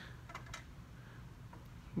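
Faint clicks of a triple beam balance's tens rider seating into its notch as it is slid along the beam, a light "ka-chink", two small clicks about half a second in.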